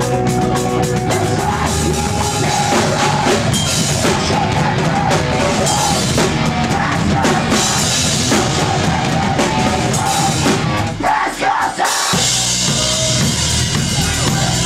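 Live rock band playing loud, with the drum kit to the fore. About eleven seconds in the low end drops out briefly, then the full band comes back in.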